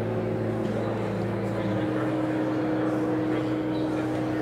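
Church organ playing slow, sustained chords over a held bass note, the upper notes changing every second or two.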